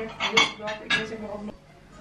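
Ceramic plates and cutlery clinking on a dinner table, several quick clinks with a short ring, then quieter near the end.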